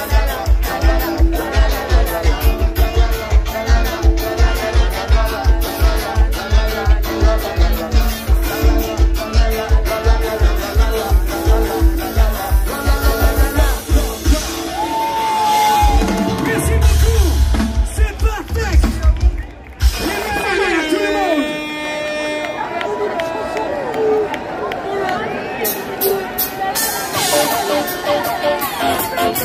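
Live band playing loud, fast dance music with a steady driving kick drum while the crowd sings along with the 'la la la' chant. About halfway through the beat gives way to a heavy bass swell, the sound cuts out for a moment, and the music goes on with held, sung notes but no steady beat.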